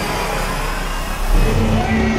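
Hockey entrance intro soundtrack: dramatic music layered with a heavy low rumble, with sustained tones entering about one and a half seconds in.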